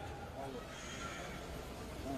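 A pause between speeches: faint murmur of distant voices from an outdoor crowd, with low background noise.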